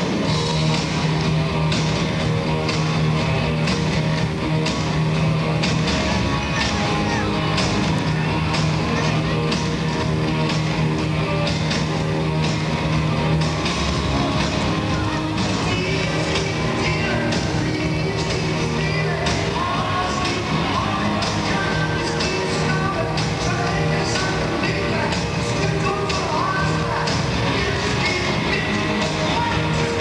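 A live rock band playing in a large arena, with a steady drum beat and guitar.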